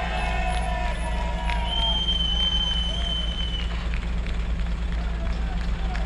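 Steady low rumble of a city bus's diesel engine idling close by, with one high note held for about two seconds in the middle.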